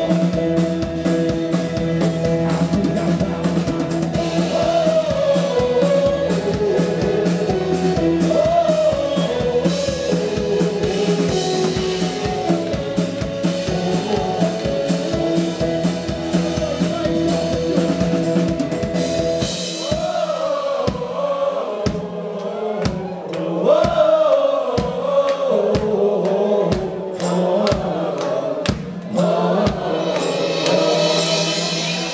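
Live rock band playing a song, with drum kit, guitars and keyboard under a woman's and a man's singing. About two-thirds of the way through, the band drops back to a stripped-down breakdown of voices over a steady beat and hand claps.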